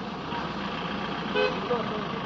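A short vehicle horn toot about one and a half seconds in, over a steady outdoor background of vehicle noise and faint voices.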